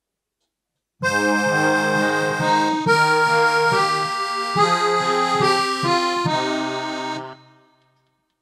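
Kurtzman K650 digital piano played with both hands: a short passage of held chords and melody that starts about a second in, runs for about six seconds and stops near the end.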